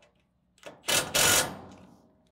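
Cordless driver spinning a hex-head self-tapping screw through a steel strut bracket into the steel bar-grating floor, in two short loud bursts about a second in, with a rapid rattling as the screw is driven home.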